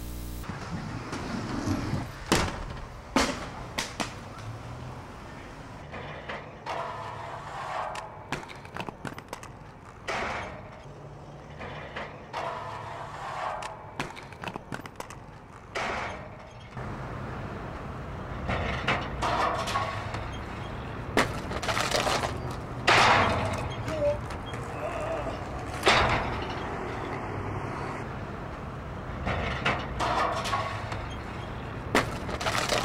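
Aggressive inline skates on concrete and metal rails: stretches of rolling and grinding noise broken by several sharp clacks and slaps of skates hitting rails and landing.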